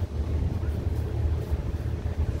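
Wind buffeting the camera microphone: a steady low rumble that wavers slightly in strength.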